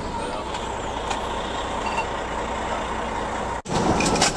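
Fire engine's engine and road noise heard from inside the cab while driving, a steady even rumble, broken by a sudden brief dropout a little past three and a half seconds in.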